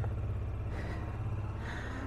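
Honda Transalp 650's V-twin engine running steadily at low speed as the motorcycle rolls along, heard from on the bike as an even low drone.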